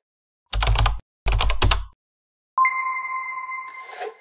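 Logo-animation sound effect: two quick runs of typing clicks, then a sudden ringing electronic tone that starts about two and a half seconds in and slowly fades, with a brief swish near the end.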